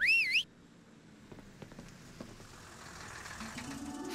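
A short cartoon whistle sound effect whose pitch wavers up, down and up again for about half a second. Then a much quieter stretch with a few faint ticks, and a low hum creeping in near the end.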